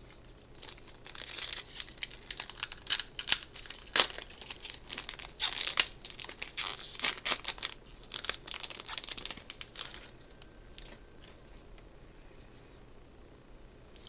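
Foil wrapper of a Magic: The Gathering Kaldheim booster pack being torn open by hand, a run of crinkling and tearing bursts with a sharp snap about four seconds in, stopping about ten seconds in.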